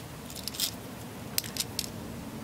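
A few faint, brief clicks and rustles, four or five over two seconds, over a low steady background.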